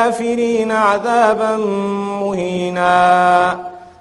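A man reciting a Quranic verse in Arabic in a melodic chant, with long held notes and ornamented turns between them; the voice stops about half a second before the end.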